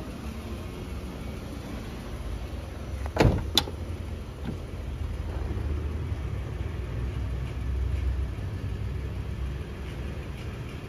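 A steady low rumble, with two sharp knocks a few tenths of a second apart a little over three seconds in, as the minivan's cabin is moved through and handled.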